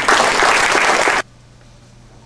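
Audience applauding, cut off abruptly about a second and a quarter in, leaving a faint steady low hum.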